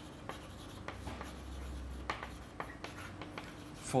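Chalk writing on a chalkboard: a string of short, irregular scratches and taps as the letters are written.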